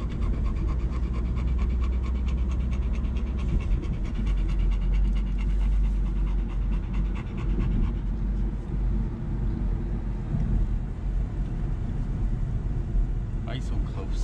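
American Pit Bull Terrier panting hard and fast, heaviest through the first half, inside the cabin of a moving car whose engine and road noise hum steadily underneath. The dog is panting from the heat in the car.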